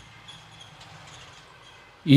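Faint, steady background noise with a low hum and a few thin high tones, with no clear event in it.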